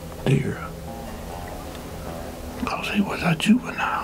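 A man speaking low in a whisper, in two short bursts, over soft background music with held notes.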